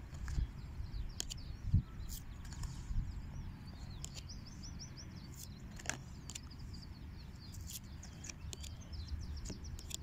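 Birds chirping in quick, high, repeated notes over a steady low rumble, with a few light taps and one low thump about two seconds in as tarot cards are handled and laid on a towel.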